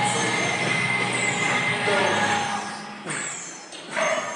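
Background music with held tones and repeated falling high sweeps. It drops away in the second half, where a few sharp knocks are heard.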